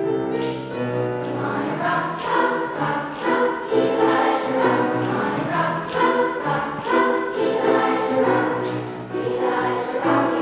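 Children's choir singing with piano accompaniment; the voices come in about a second and a half in, after a short piano passage.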